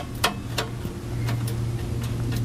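A few light metallic clicks as an exhaust pipe and its slip-joint clamp are worked by hand, over a steady low hum.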